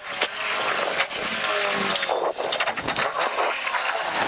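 Toyota AE86 rally car's engine heard from inside the cabin, slowing for a hairpin and dropping down to first gear, its pitch falling and rising, with several sharp cracks along the way.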